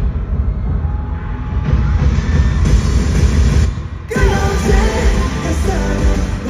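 Live K-pop concert music with a heavy bass, heard through an arena PA and recorded from among the audience. The music briefly drops out about four seconds in, then comes back with a melody line over it.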